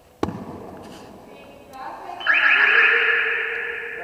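A single sharp knock a quarter-second in, echoing through the sports hall, then people shouting loudly from about two seconds in, fading toward the end.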